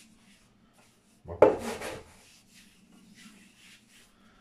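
Hands rubbing flour along a wooden rolling pin, a soft scratchy rubbing. About a second and a half in there is one much louder, short sound.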